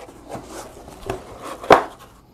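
Cardboard box being opened by hand: the lid and a cardboard insert scrape and rustle, with a few light knocks and one sharp knock near the end.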